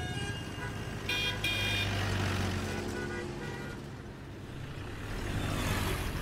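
Busy city street traffic with a steady low engine hum, and a vehicle horn tooting twice in quick succession about a second in.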